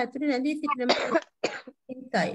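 A person's voice speaking for about a second, then a short cough, followed by a smaller burst of breath.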